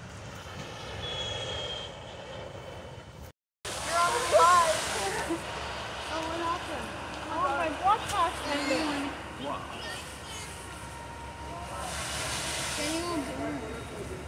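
Indistinct voices talking over a steady background rush of outdoor noise. The sound cuts out completely for a moment a few seconds in.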